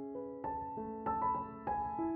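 Background piano music: a slow melody of held notes, with a new note about twice a second.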